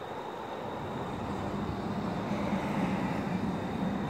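Steady rumbling vehicle running noise that grows louder about a second in, with a low hum coming up under it.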